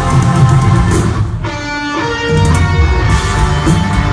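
Live rock band with electric guitars and drums playing loud through a concert PA, heard from the crowd. About a second and a half in, the drums and bass drop out and a held guitar chord rings alone, then the full band comes back in just past two seconds.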